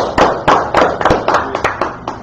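Hand clapping: a quick, uneven run of loud claps, several a second.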